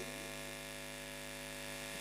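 Steady electrical hum and buzz from a stage PA sound system, a stack of even tones with no change.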